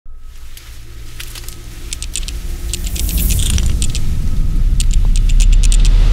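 Sound effects for an animated logo intro: a low rumble that swells steadily louder, with scattered bursts of quick clicks and rattles over it.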